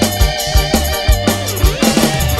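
A live band plays an instrumental reggae passage: electric guitar over bass and drum kit, with a kick drum every half second.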